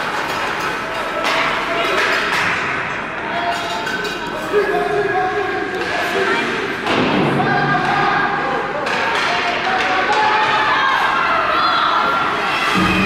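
Ice hockey game in an indoor rink: repeated knocks and thuds of sticks and puck against the ice and boards, with spectators talking and calling out. One sharp knock stands out about four and a half seconds in.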